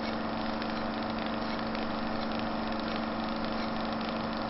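A steady, engine-like drone: a constant low hum with overtones over an even hiss, holding the same level throughout.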